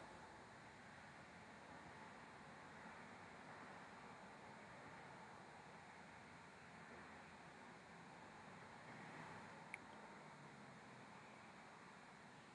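Near silence: faint room hiss, with one small click about ten seconds in.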